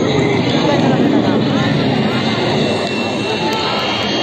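Jet noise from Surya Kiran BAE Hawk Mk132 trainers flying the display overhead: a loud, steady rush of engine sound, with voices of the watching crowd underneath.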